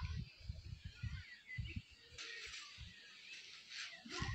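Outdoor park ambience: irregular low rumbling of wind and handling on a phone microphone, with faint bird chirps and a soft hiss in the second half.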